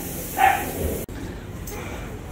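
A dog gives a short, high yip about half a second in, followed by a quieter stretch of background.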